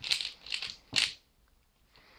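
A plastic 3x3 Rubik's-type cube being turned fast by hand: about four quick clattering clacks of the layers turning in the first second, then the turning stops.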